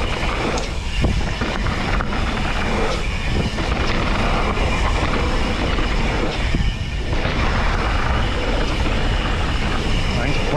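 Mountain bike (Propain Tyee) ridden fast down a dirt trail: tyres rolling on packed dirt, wind rushing over the microphone, and rattles and knocks from the bike over bumps, with a few brief lulls.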